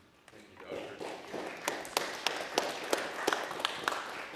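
Audience applause at the end of a lecture: a spread of clapping that builds about a second in, with one person's claps close to the microphone standing out at about three a second.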